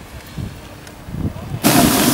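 Outdoor camera-microphone noise: a quiet low rumble with a few soft knocks, then, about a second and a half in, an abrupt jump to a loud, steady rushing hiss.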